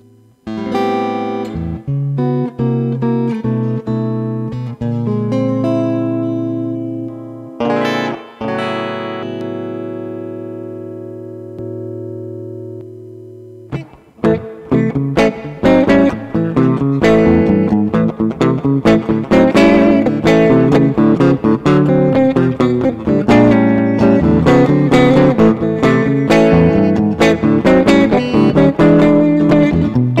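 Laurie Williams Riverwood electric guitar played with a clear, natural clean tone: picked chords and single notes, then one chord left ringing and slowly fading for several seconds. About halfway through, a busier stretch of quickly picked notes and chords starts and runs on.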